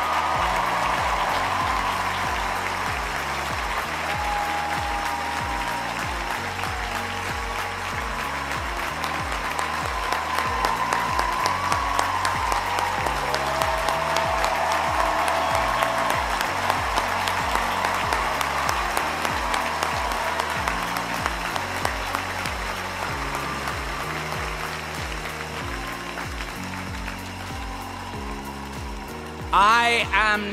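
A large crowd applauding over music with a slow, stepping bass line of held notes. The applause thins out in the last few seconds.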